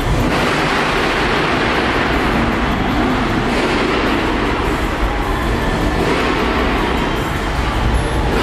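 A Cadillac CTS sedan on oversized chrome spoke wheels rolling slowly past in a large concrete hall, heard as a steady loud rumble and wash of noise that echoes around the hall.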